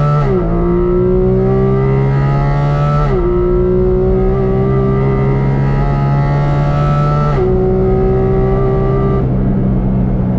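Porsche 718 Cayman GT4 RS's 4.0-litre naturally aspirated flat-six at full throttle, heard from inside the cabin, pulling hard through the gears. The dual-clutch gearbox upshifts three times, from 2nd up to 5th, and each time the engine note drops suddenly before it climbs again.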